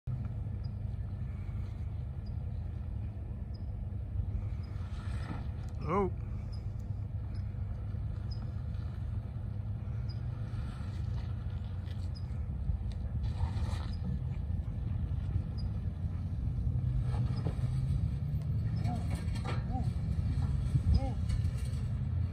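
Range Rover Sport (L320) engine running low and steady as the SUV crawls over rocks and ruts, getting a little louder in the later part.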